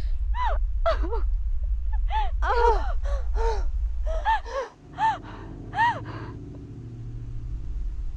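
A female voice crying in about a dozen short, high, gasping sobs, each rising and falling in pitch. Underneath is a steady low drone that drops away a little past halfway and gives way to a softer low hum.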